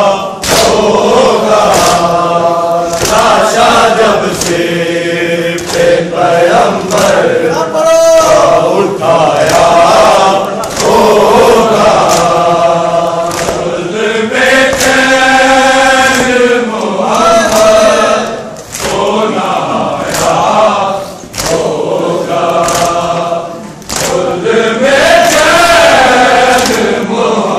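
Large group of men chanting a mourning lament (noha) together, loud and continuous, with regularly repeated sharp slaps of bare-chested chest-beating (matam) marking the beat.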